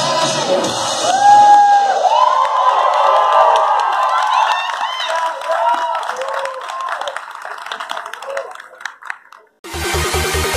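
Pop backing track ending about a second and a half in, followed by an audience cheering, whooping and clapping that fades away. Near the end a new electronic dance track with a heavy beat starts abruptly.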